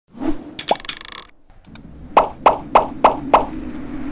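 Animated logo intro sound effects: a quick sweep and a short buzzy ringing in the first second or so, then five sharp cartoon plops about three a second, over a low steady hum.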